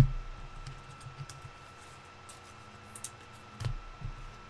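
Trading cards and packs being handled on a table: scattered light clicks and taps, with a duller thump a little before the end. A faint steady whine runs underneath.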